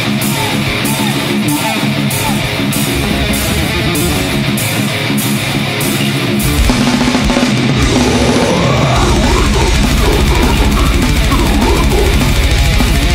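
Death metal band playing live: distorted guitars, bass and drums, with regular cymbal strokes about two or three a second in the first half. The pattern changes past the middle, and fast, dense low drumming comes in about three-quarters of the way through.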